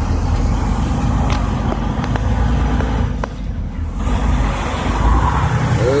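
Steady low engine and road rumble heard from inside a truck cab while driving in rain, with a few faint clicks.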